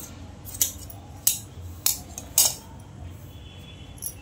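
Large tailor's shears snipping through cotton fabric: four sharp snips, each about half a second apart.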